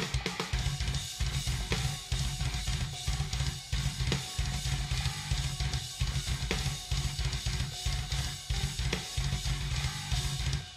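Progressive metal drum playthrough: an acoustic drum kit, played live with no triggers or edits, running a fast, dense kick-drum pattern with snare and cymbal hits over the band's recorded track.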